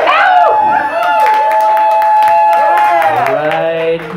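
Audience cheering and whooping with some clapping. One voice holds a long, steady high whoop for about two and a half seconds, then its pitch falls away near the end.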